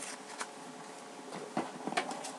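Faint paper handling: a few soft rustles and light taps as a magazine is put down and a printed card is picked up, over low room hiss.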